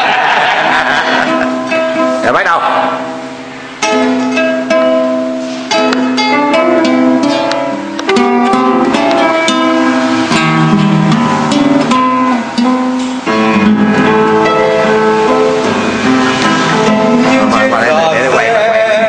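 Classical nylon-string acoustic guitar played by hand, a run of plucked, ringing notes and chords opening a song.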